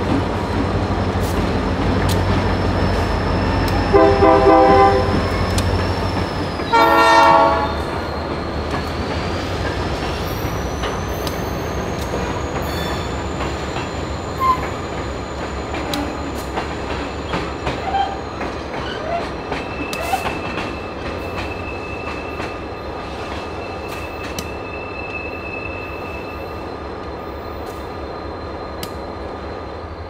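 A diesel freight locomotive rolls past with its engine running, and a locomotive horn sounds two short blasts, about four and seven seconds in. Tank cars and hopper cars then roll by, their wheels clicking over the rail joints against a steady high-pitched wheel squeal.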